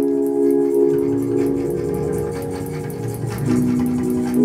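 Electronic music: a held organ-like synth chord that shifts down to a lower chord about three and a half seconds in, over a low rumble and a fast, light ticking pulse.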